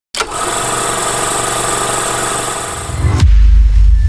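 Channel logo intro sound effect: a dense, sustained rushing sound that starts suddenly and runs about three seconds, then sweeps downward into a loud, deep bass boom that holds to the end.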